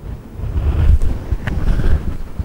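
Loud, irregular low rumble of handling or rubbing noise on the microphone while the wearer moves, with a couple of faint clicks about a second and a second and a half in.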